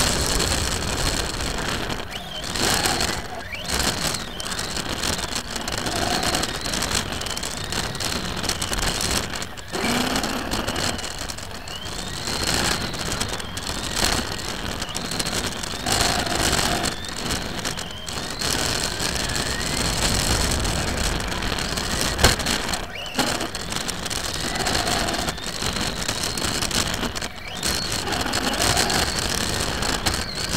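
On-board sound of a radio-controlled touring car racing on a carpet track: a steady mechanical running noise with a faint motor whine rising and falling as the throttle changes, and frequent short dips when it lifts off.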